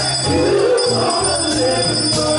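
Live gospel praise-and-worship music: voices singing over a Roland RD-700SX stage piano, bass notes and a drum kit, with a jingling, bell-like shimmer on top.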